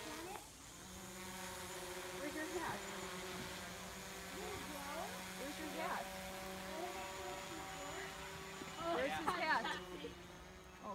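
Quadcopter drone flying overhead, its propellers giving a steady hum that comes in about a second in, with voices briefly over it.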